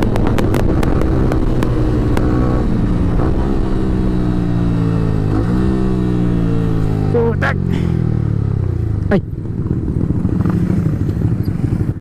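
A Yamaha R15's single-cylinder engine heard from the rider's seat with wind noise, its pitch falling steadily as the motorcycle slows. The sound drops sharply in level a little after nine seconds in, and the engine runs on low as the bike pulls over to the roadside.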